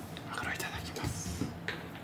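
Soft mouth sounds of someone chewing a piece of grilled steak, with one light click near the end.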